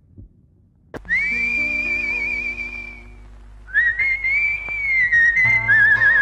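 A film song's intro starts after about a second of near silence: a high, wavering whistled melody in three phrases over soft held accompaniment notes.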